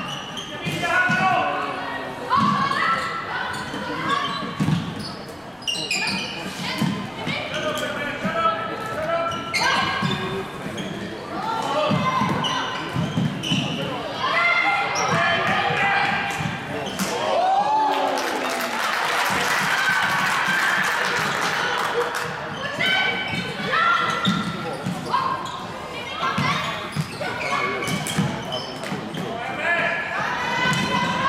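Indoor floorball game sounds echoing in a sports hall: players' shouts and calls, with the knocks of sticks striking the plastic ball and the floor. About eighteen seconds in, a burst of noise lasts for several seconds.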